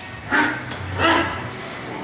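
Two short, sharp shouts from a fighter, about three-quarters of a second apart, as he works in the plum clinch.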